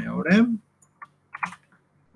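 A few keystrokes on a computer keyboard, short separate clicks, while a line of HTML is being edited. They come just after a brief bit of speech at the start.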